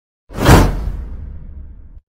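Intro whoosh sound effect: a rush of noise that swells quickly to a peak about half a second in, then fades out over the next second and a half, with a low rumble underneath.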